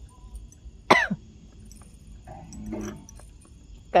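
A person coughs once, sharply and loudly, about a second in. Faint voices follow.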